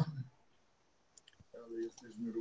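A few faint, short clicks a little over a second in, typical of a computer mouse being clicked to switch on a recording.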